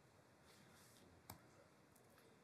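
Near silence with faint room tone, broken by a single short click about a second and a half in: a key press on the presentation laptop advancing the slides.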